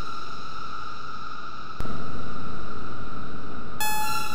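Weird soundscape from a VCV Rack software modular synthesizer patch: a held electronic tone with overtones, a noisy hit about two seconds in, and a bright new tone starting near the end. New events come about every two seconds, each one slowly fading.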